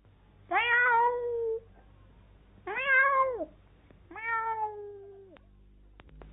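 A cat meowing three times, each meow rising and then falling in pitch, the first and last drawn out longer than the middle one.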